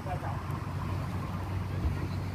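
Steady low rumble of distant city traffic, with no single vehicle standing out.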